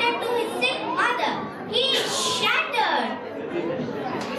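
Children's voices speaking and calling out in high pitch.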